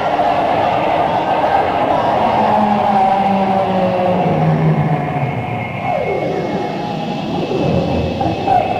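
Live space-rock band's electronic drone: a dense, loud wash of sustained whooshing tones. A low held tone steps down in pitch, and a falling swoop comes about six seconds in.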